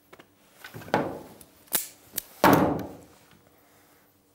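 A few knocks and sharp clicks as a revolver is handled on a wooden table. The loudest knock comes about two and a half seconds in.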